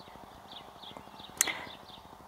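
Birds chirping in the background: a series of short, faint, high notes. One sharp click about one and a half seconds in.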